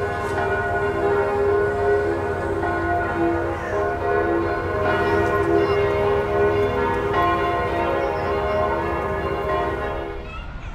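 Church bells pealing: several bells ringing together in a steady, overlapping wash of tones.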